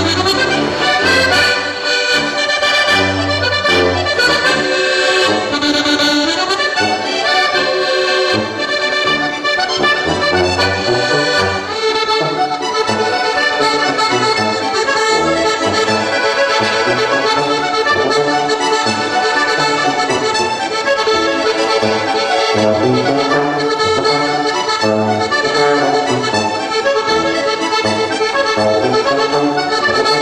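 Two accordions playing a folk tune together, the melody over a regular bass line, steady and unbroken.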